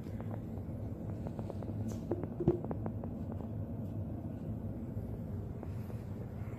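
Steady low hum with scattered light clicks and one sharper knock about two and a half seconds in: handling noise as the camera is moved around the back of a metal mantel clock.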